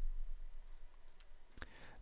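A computer mouse clicking about one and a half seconds in, with a fainter click just before it, over a faint low hum.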